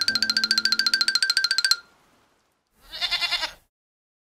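Comic sound effects on a film soundtrack: a high tone pulsing rapidly, about a dozen pulses a second, for about two seconds, then cutting off suddenly, followed by a short pitched burst about three seconds in.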